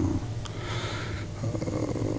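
A man draws a breath in a pause between words, heard as a soft hiss, over a steady low hum.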